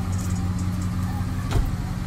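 Ford F-150 pickup's engine idling with a steady low hum, and a single sharp click about a second and a half in.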